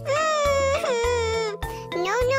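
A children's song backing track with a steady bass beat, under a long, high, wavering wail from a voice. The wail lasts about a second and a half and sounds like a cartoon character crying.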